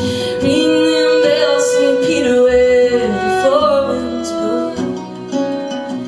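A woman singing live with her own archtop acoustic guitar: she holds one long note for about the first three seconds, then moves through a shorter phrase of changing notes over the guitar accompaniment.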